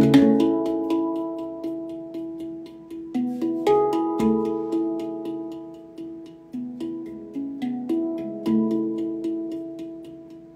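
Steel handpan played by hand: ringing notes struck one after another, each fading away, in a slow melody over a steady patter of light quick taps, about four a second.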